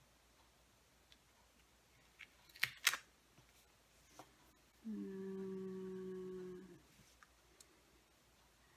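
A couple of sharp taps of card stock being handled about three seconds in, then a person humming one held, level note for about two seconds.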